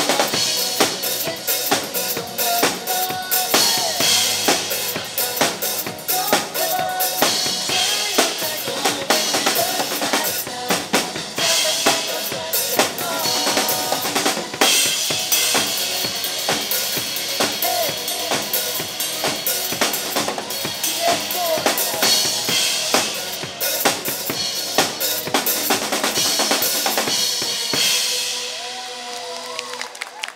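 An acoustic drum kit played hard, with kick, snare, rimshots and cymbal crashes, over a pop backing track with a sung melody. The playing stops near the end and the sound drops off.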